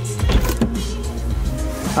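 Tesla Model X driver's door released with its electric button and power-opening, with a motor whirring and a click as the latch lets go.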